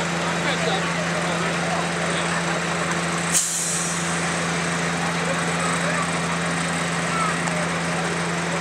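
Stopped diesel freight locomotive idling with a steady low hum. A single short, sharp hiss about three and a half seconds in.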